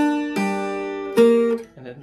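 Cuban tres plucked, playing single notes of a walk-up on the G strings into a G minor chord. There are three notes: one at the start, one about a third of a second later, and the loudest about a second in. Each rings out and fades.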